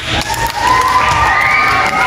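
Crowd of schoolchildren cheering and shouting, many high voices overlapping, as a candidate is announced.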